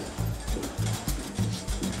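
Background music with a steady low beat.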